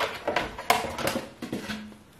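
Handling noise on a work table: a few light knocks and clatters with some rubbing as a painted wooden barn-quilt board is reached for and lifted off a stack.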